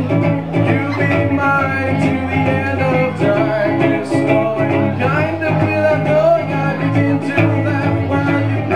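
Acoustic guitars playing a song live, chords changing in a steady repeating rhythm with a melody line over them.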